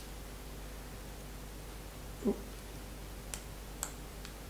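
Quiet room tone with a faint steady hum, a short soft sound about two seconds in, and two faint small clicks near the end from handling the detector's battery lead.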